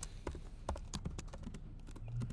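Typing on a computer keyboard: an irregular run of keystroke clicks, several a second.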